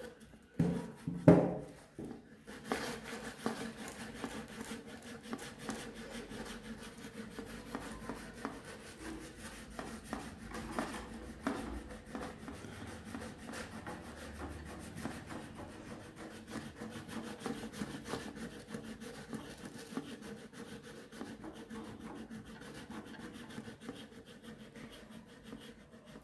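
A cardboard shoebox seismograph being jiggled on a wooden table while a paper strip is pulled through beneath a cup-hung pen: continuous rubbing and scraping of paper and cardboard on wood, with many small taps. These are hand-made tremors for the pen to record. A couple of louder knocks come about a second in.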